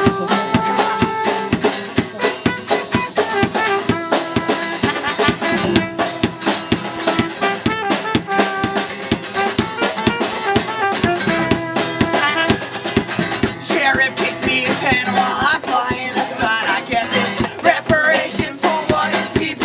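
A live folk-punk band playing an up-tempo song: strummed acoustic guitar, trumpet and a drum kit with fast, steady drum hits throughout. A voice sings over it near the end.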